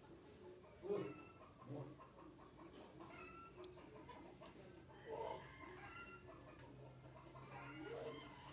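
A few faint, short animal calls over quiet room tone: the loudest comes about a second in, with others near two seconds, just past five seconds and near the end.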